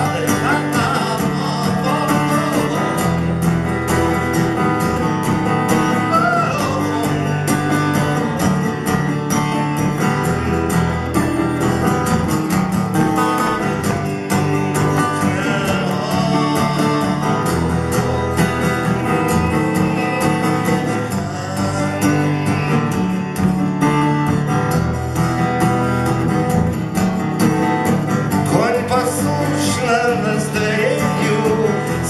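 A man singing while strumming an acoustic guitar, played live without a break.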